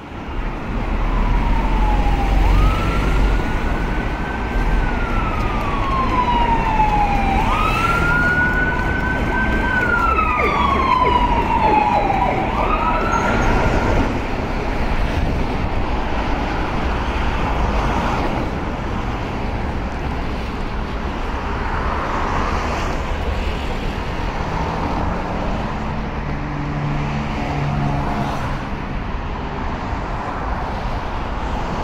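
An emergency vehicle's siren wailing, its pitch slowly rising and falling several times and dying away about halfway through, over the continuous noise of heavy road traffic.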